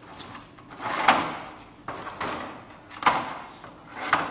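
Metal queen excluder grids scraping and sliding against each other as one is moved on the stack. Three short scrapes come about a second apart.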